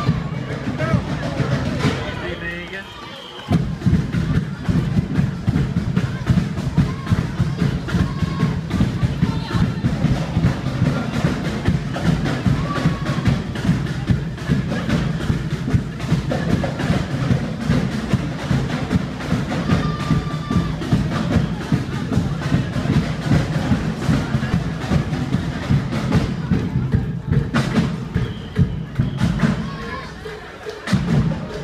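Loud music driven by drums and percussion, a fast beat that drops away briefly about three seconds in and then comes back, with voices over it.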